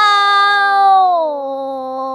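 A young girl's voice holding one long, loud "ah" at a steady pitch, the vowel shifting a little about a second in.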